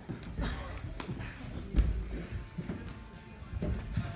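Knocks and thuds of a climber's shoes and hands on the holds and panels of an indoor bouldering wall: a sharp click about a second in and a heavy low thump a little under two seconds in, over indistinct voices in a large room.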